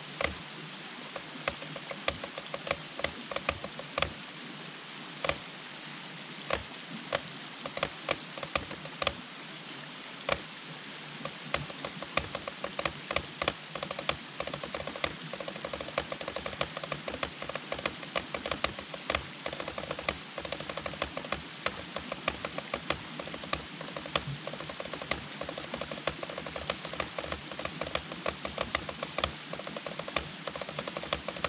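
Drumsticks playing a rudimental snare solo on a rubber practice pad: a dense, steady stream of sharp strokes with louder accented hits and flams (flamacues) at about 95 beats per minute. A steady rush of stream water runs underneath.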